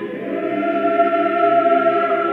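Choir singing slow church music in long held chords, moving to a new chord just after the start.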